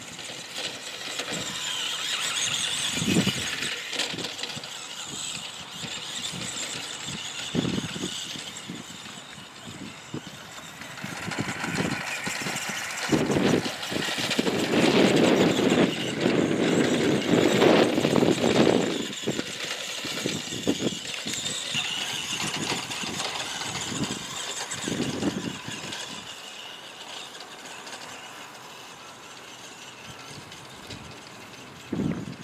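Radio-controlled Tamiya Bullhead monster truck driving over grass: its electric drive whines, rising and falling with the throttle. A louder, rougher stretch comes about halfway through.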